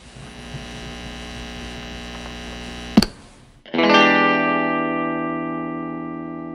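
Guitar amplifier buzzing with mains hum, a sharp click about three seconds in, then a distorted electric guitar chord struck once and left to ring out, slowly fading.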